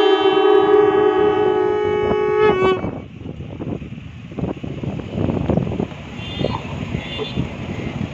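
Several conch shells (sangu) blown together on one long held note that ends about three seconds in, likely the close of the national anthem played on conches. After it comes a quieter stretch of outdoor noise with voices.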